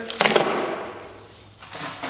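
A man's short laugh over the rustle and clatter of a plastic bag of caster wheels being set down on a table. It starts about a quarter second in and fades over about a second.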